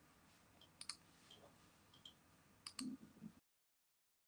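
Near silence with a few faint clicks: one about a second in and a quick pair near three seconds. The sound then cuts off completely to dead silence about three and a half seconds in.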